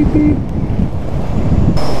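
Wind buffeting the camera microphone while riding a scooter, a loud, uneven low rumble.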